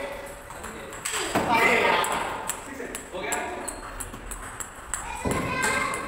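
Table tennis ball clicking off bats and the table during a rally, with people's voices in the hall around it.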